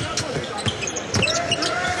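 Basketball bouncing on a hardwood court: several sharp dribbles, with squeaks or voices from the court in the hall behind them.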